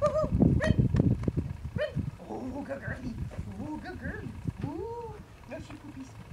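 Indistinct voices and short pitched calls, over scuffling on dry ground in the first two seconds. One clear rising-then-falling call comes about five seconds in.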